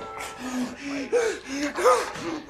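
A man choking, letting out a run of short, strained gasps and wheezing vocal sounds one after another.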